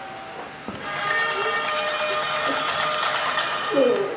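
Sound effects of a TV channel ident: after a brief lull, a noisy rush with steady tones over it builds up about a second in, and a loud swooping tone comes near the end.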